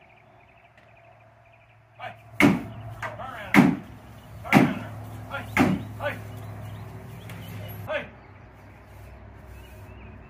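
A run of loud metallic bangs and clanks from livestock trailer and gate panels, four heavy ones about a second apart with lighter knocks between, over a low steady rumble. They start about two seconds in and stop about eight seconds in.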